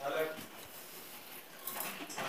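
Freshly ground dal poured out of a steel mixer-grinder jar into a steel bowl: a faint, even pouring sound. A faint voice is heard at the very start and again near the end.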